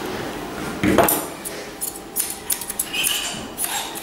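A sharp knock about a second in, then a run of quick, light metallic clicks and snips from grooming scissors and a steel comb working through a dog's coat.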